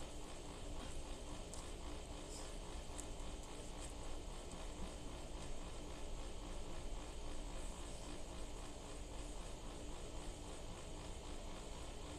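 Steady low background noise with a faint continuous hum and no distinct events.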